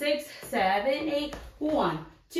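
A woman speaking in short phrases.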